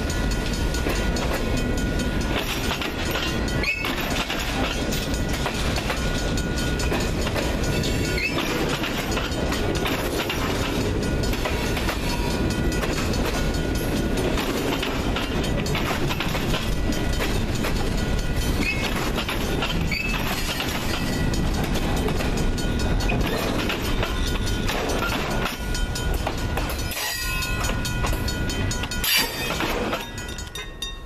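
Freight train cars, bulkhead flatcars and boxcars, rolling past close by with a steady rumble and the clatter of wheels over rail joints. The end of the train passes near the end, and the sound falls away.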